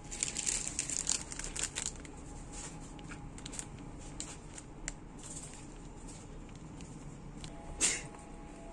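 Clear plastic product packaging crinkling and crackling as it is handled, densest in the first two seconds, then in scattered crackles, with one sharper, louder crackle near the end.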